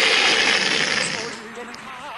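A sudden loud burst of rushing noise that fades away over about a second and a half, in a stage comedy routine.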